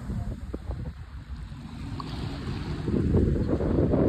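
Wind buffeting a phone's microphone at the shoreline, a low gusty rumble that grows louder over the last second or so.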